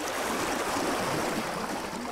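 Steady rushing noise like running water, holding even for about two seconds.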